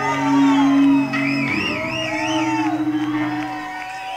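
A live garage-punk band's last sustained guitar notes ringing out as a song ends, fading near the end, while the audience whoops and shouts.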